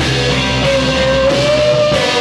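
Live rock band playing: electric guitar, bass, synth and drums, with a held high note that steps up in pitch about two-thirds of a second in. Recorded on a Wollensak 3M 1520 reel-to-reel tape recorder.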